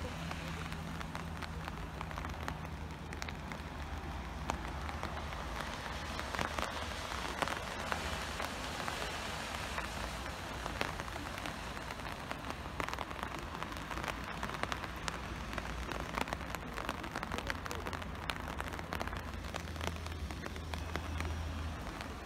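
Light rain pattering close to the microphone, many small drop ticks over a steady hiss, with a steady low hum underneath.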